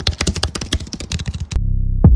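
Keyboard-typing sound effect: a rapid run of clicks. About three-quarters of the way in it gives way to a low, steady synthesizer drone that opens a music sting.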